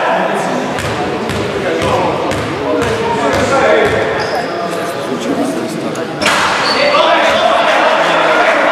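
Indistinct voices of players and spectators echoing in a sports hall, with a basketball bouncing on the court. The hall noise grows louder about six seconds in.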